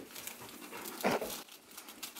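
Wrapping paper rustling faintly as hands open a gift-wrapped box, with one short, sharp yelp about a second in.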